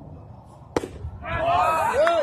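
A single sharp crack of a pitched baseball at home plate about three quarters of a second in, followed by a loud swell of many voices yelling and cheering from the dugouts and stands.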